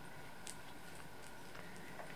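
Faint rustling and a few light ticks as a kitten claws and bites a feathered toy on soft bedding, over a steady low hiss.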